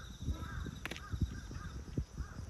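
A cat chewing and lapping wet food right next to the microphone: a run of irregular, wet smacking sounds. Behind it, short calls repeat about three times a second.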